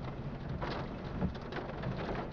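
Storm noise under a tornado: steady rain and wind with low rumbling underneath, swelling briefly louder a couple of times.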